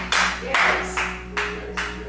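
Congregation clapping in a steady rhythm, about two claps a second, over a sustained musical note; the clapping stops near the end.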